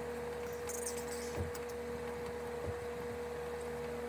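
Steady electrical hum over quiet room tone, with faint rustling of hair as a braid is undone by hand and two soft thumps, about one and a half and two and a half seconds in.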